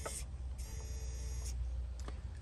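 SwitchBot Bot push-button robot working its arm: a click near the start, then its small motor whirs for about a second as the arm moves.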